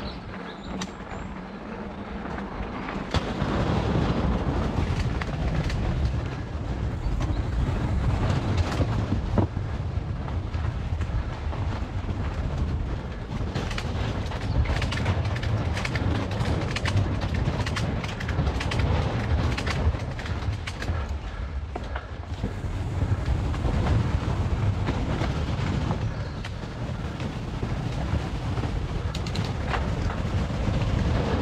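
Mountain bike riding a dirt trail: a continuous rough rumble of tyres over the ground with frequent rattles and knocks from the bike, quieter for the first few seconds and then louder.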